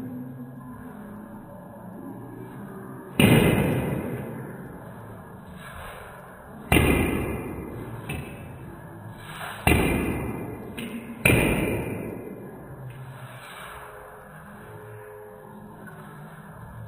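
Slowed-down ping-pong ball knocks: four sharp hits, each drawn out into a long fading tail, the last two about a second and a half apart.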